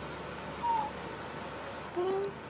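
A small animal's single short, high-pitched call, falling slightly in pitch, about halfway through, over a steady background hiss.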